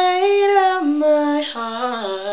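A young man's voice singing unaccompanied, holding a long note that steps down in pitch, with a brief break about one and a half seconds in before a lower note.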